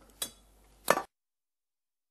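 Two short, sharp clinks of kitchenware, glass or metal, about two-thirds of a second apart, each with a brief ring; then the sound drops out to dead silence.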